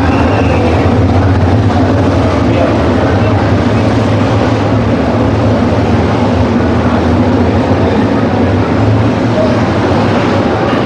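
A field of sprint car engines running together, a loud steady drone.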